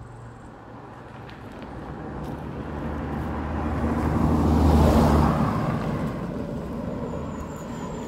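A car passing by on a narrow, rough road: engine and tyre noise build to a peak about five seconds in, then fade as it drives away up the road.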